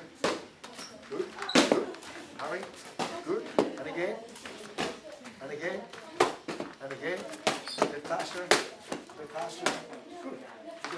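Boxing gloves striking a coach's focus mitts during pad work: a run of sharp slaps at uneven intervals, roughly one a second, with indistinct voices between them.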